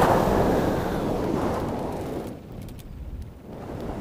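Two-stroke Moster 185 paramotor engine cutting out in flight, its sound falling away over about two seconds and leaving a low rumble of wind. The engine has died because the kill switch was hit, as the pilot thinks.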